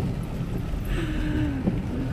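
Cabin noise of a pickup truck driving on rain-soaked pavement: a steady low rumble, with a faint brief tone and a little hiss about a second in.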